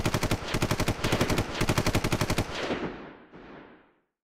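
A long burst of automatic machine-gun fire, about a dozen rounds a second for some two and a half seconds, then trailing away.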